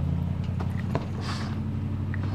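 A small boat outboard motor idling with a steady low hum, with a few light knocks and clicks from fishing rods being handled in the boat during the first second.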